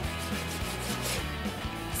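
Soft background music with steady held low notes, under the faint rasp of a kitchen knife sawing through raw pork loin on a plastic cutting board.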